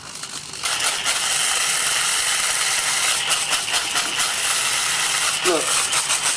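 Bamix hand blender running in its polycarbonate dry-chopper bowl, the blade grinding whole spices (star anise, fennel seeds, white peppercorns, cardamom and coriander seeds) into a fine powder: a steady, rattling whir that grows louder about half a second in.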